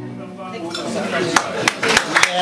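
The band's last chord dies away, then bar-room chatter with a few sharp clinks of glasses and dishes in the second half.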